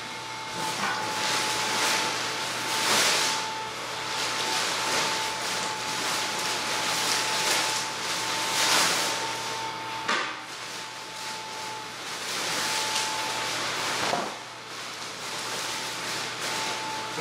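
Small blower fan of an inflatable T-rex costume running with a steady whine, while the costume's thin fabric rustles and swishes in swells every few seconds as it is unfolded.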